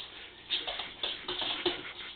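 An Italian greyhound's and a cocker spaniel puppy's claws clicking and scrabbling on a tile floor as they play, in quick irregular ticks and shuffles.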